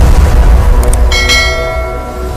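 Subscribe-button sound effects: a couple of sharp clicks, then a bell chime about a second in that rings and fades, over a steady deep bass rumble.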